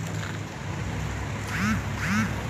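Steady low rumble of a vehicle engine and street noise, with two short voice calls in the background near the end.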